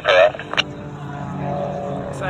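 Aircraft engine droning steadily overhead, growing slowly louder, after a brief voice and a click in the first half second.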